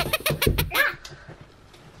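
A child's high-pitched laughter in a quick run of short squealing bursts, fading out after about a second.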